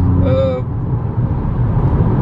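Steady in-cabin drone of a VW Golf 5 GTI's turbocharged 2.0 TFSI four-cylinder and its tyres at highway cruise. The smooth engine hum gives way to a rougher road rumble about half a second in.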